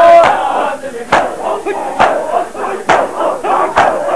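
A crowd of men beating their chests in unison in matam: four sharp slaps fall at an even beat, about one every 0.9 seconds. Loud shouting and chanting voices fill the gaps between the strikes.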